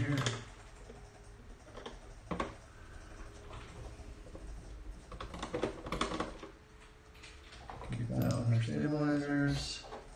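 A screwdriver working the single screw in the underside of a plastic Apple Extended Keyboard II case, with scattered clicks and scrapes of metal on plastic and the case being handled, a cluster of them about halfway through.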